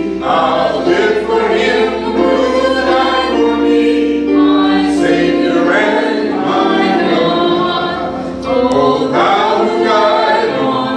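Congregation singing a hymn together, many voices in unison, with long held notes.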